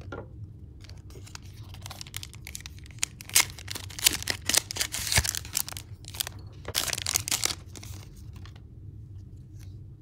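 Foil wrapper of a Pokémon trading card booster pack being handled, torn open and crinkled, with two spells of crackling: from about three to five seconds in, and again around seven seconds.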